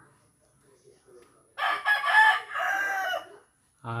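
A rooster crowing once, starting about one and a half seconds in and lasting under two seconds.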